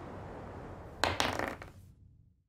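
A die rolled onto a tabletop: a quick clatter of several sharp knocks about a second in that dies away, over a faint steady hiss.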